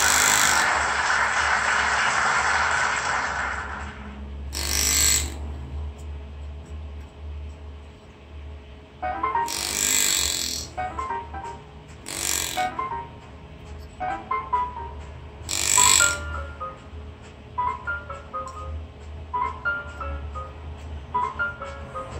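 Powered engraving handpiece driving a flat graver through a metal plate: a loud run of noise for the first three seconds or so, then several short bursts. Jazz music plays in the background, with bell-like notes in the second half.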